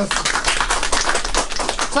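Applause from a small group of people: a dense, quick patter of hand claps.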